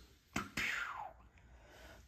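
Handling noise as a knife is lifted into view in the hands: a single sharp click a third of a second in, then a brief rustle with a sound falling in pitch, fading to faint room tone.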